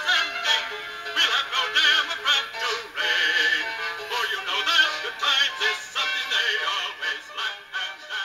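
A campaign song for William McKinley playing: music with a sung melody, thin-sounding with almost no bass.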